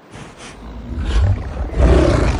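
Film creature sound effect: a deep, rumbling beast growl that swells into a loud roar near the end.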